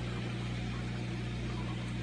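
Steady low electrical hum with a soft noisy wash, from the running pumps and equipment of a reef aquarium.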